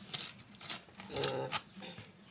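A knife scraping scales off a common carp in several short, rasping strokes. A brief call-like voice or animal sound comes about a second in.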